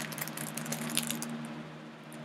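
Light clicks and rustles of small items and packaging being handled on a desk, over a steady low hum.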